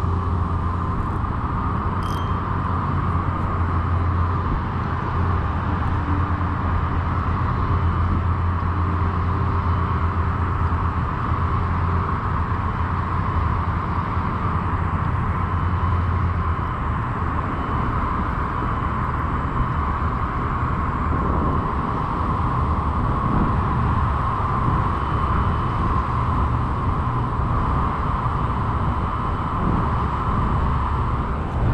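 Steady outdoor background noise, a continuous low rumble under a hiss, with one short click about two seconds in.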